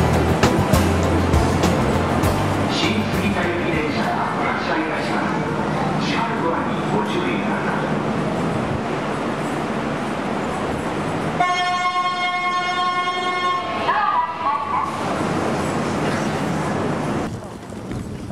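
Busy station platform noise around a train standing behind platform screen doors, with people's voices. About eleven seconds in, a steady horn-like warning tone sounds for about two and a half seconds, followed by a voice.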